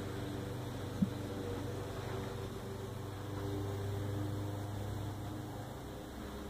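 A steady low machine hum, with one short click about a second in.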